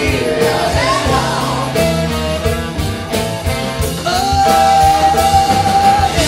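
Live rock and soul band playing with lead and backing vocals: drums, bass, guitar, keys and horns. One long held high note comes in over the band in the second half.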